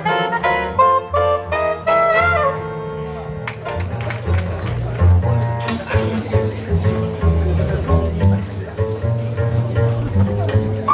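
Small jazz group playing: a saxophone phrase of short notes ends about two and a half seconds in, after which a plucked double bass line carries on with stage-piano chords.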